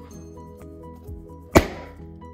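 A balloon pricked with a safety pin bursts with one sharp bang about one and a half seconds in. Untaped, it pops at once.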